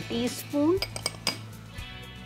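A metal spoon clinking against kitchenware in a quick cluster of four or five clicks about a second in, as whole spices are spooned out for the tadka.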